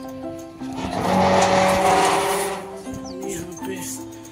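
A harsh scraping noise that swells up about a second in and lasts about two seconds, over background music with steady held notes.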